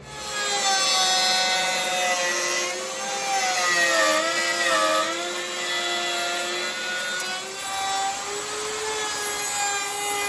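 Router table running, its motor whining as a bearing-guided bit trims the edge of a pine guitar body. The pitch sags and wavers in the middle as the bit bites into the wood under load, then steadies.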